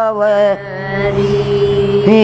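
A woman singing a Haryanvi rain-season folk song unaccompanied, drawing out a long, slightly wavering note. About half a second in, the note gives way to a breathier, steady lower tone.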